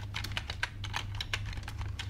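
Computer keyboard typing: a quick, uneven run of keystrokes, over a steady low hum.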